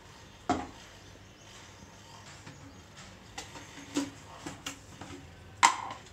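Kitchen bowls and a spoon being handled on a stone countertop: scattered clicks and knocks, with a sharp knock about half a second in and the loudest one just before the end.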